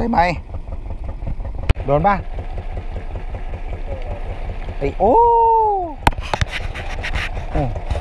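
Fishing boat's engine idling with a steady low chugging pulse. There is a sharp click just under two seconds in, and a quick run of clicks and knocks about six seconds in.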